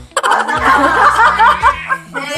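Several people laughing and chuckling together, over background music with a steady low bass.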